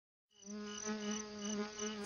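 Cartoon bee buzzing sound effect: a steady, even-pitched low buzz that begins about half a second in and swells and fades roughly three times a second.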